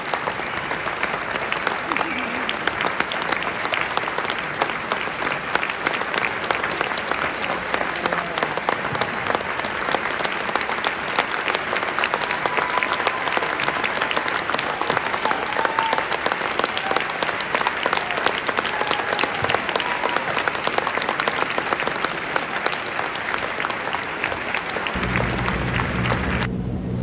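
A large concert audience applauding steadily, a dense, unbroken clatter of many hands clapping. About a second before the end it gives way to a low outdoor rumble.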